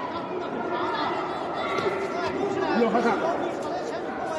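Crowd chatter in a large hall: many voices talking and calling out over one another at once.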